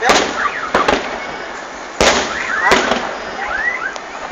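Aerial fireworks shells bursting, four loud bangs: one at the start, one just under a second in, then two more from the two-second mark. In the second half a run of short rising-and-falling whistling tones repeats a few times.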